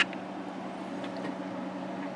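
Steady electrical hum with a low tone and a fan-like hiss from running bench test equipment, with one short sharp click right at the start.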